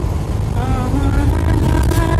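Steady low rumble of a bus's engine and tyres, heard from inside the moving bus, with a song's sung melody playing over it.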